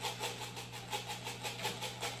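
A steady low hum with a quick, even run of faint light clicks over it.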